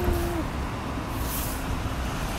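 Low, steady rumble of city street traffic, with a short steady tone at the very start and a brief hiss about a second in.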